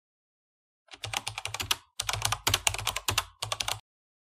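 Computer keyboard typing sound effect: rapid keystrokes, about ten a second, in three quick runs starting about a second in, with short pauses between them.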